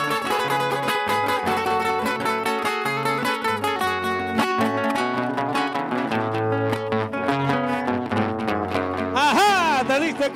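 Two acoustic guitars playing a Panamanian torrente in lamento style, with a busy plucked melody over low bass notes. Near the end a man's voice comes in with a long, wavering sung note.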